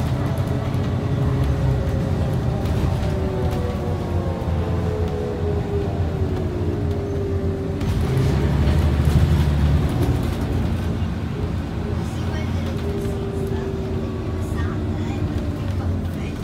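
Inside a Scania OmniCity bus under way: a low engine drone with a whining tone from the drivetrain that slowly falls and rises in pitch as road speed changes. The rumble grows louder about eight seconds in.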